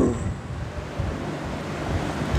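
Steady rushing noise picked up by a headset microphone, with the tail of a recited word trailing off at the very start.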